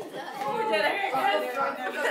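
Several people talking over one another at once: lively group chatter.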